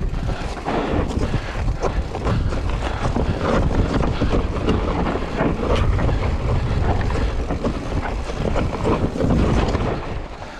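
Mountain bike descending a rocky dirt trail: steady rumbling wind on the camera microphone, with tyres crunching over dirt and stones and the bike clattering and rattling over the bumps.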